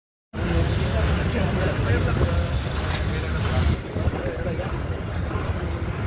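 Diesel bus engines running with a steady low rumble amid crowd chatter, with a short hiss about halfway through.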